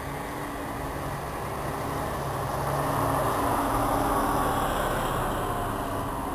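City bus driving past on a wet road: its diesel engine runs under the hiss of tyres on the wet asphalt. The sound grows louder as the bus passes, peaks about halfway through, then fades as it moves away.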